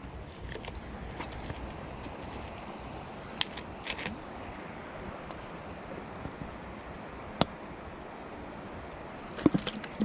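Steady rushing outdoor background noise with a few isolated sharp clicks, from small fishing tackle being handled while a spinner is clipped onto a snap swivel.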